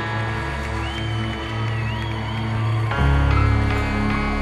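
Background music laid over the footage: held synth tones with a gliding high melody, then a louder, bass-heavy beat comes in about three seconds in.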